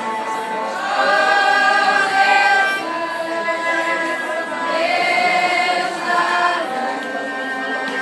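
A small mixed choir of teenage voices singing together in long, held notes, with a cello accompanying; the singing swells louder about a second in and again around five seconds.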